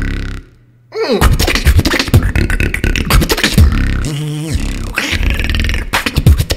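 Solo beatboxing into a microphone: rapid mouth-made drum hits over deep vocal bass. It breaks off for about half a second near the start, comes back in with a falling sweep, and later has a wavering held tone.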